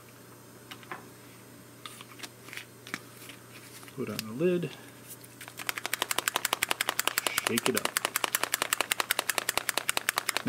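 A marble rattling inside a capped plastic bottle shaken hard to mix graphite powder into ink: a fast, even clatter of about seven knocks a second starting about halfway through. Before it, a few light clicks of the bottle being handled and capped.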